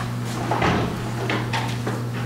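A door clunking shut about half a second in, followed by a few lighter knocks, over a steady low electrical hum.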